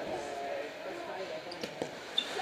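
Hockey players' voices calling out across a large indoor ice rink, with two sharp clacks of sticks and puck near the end.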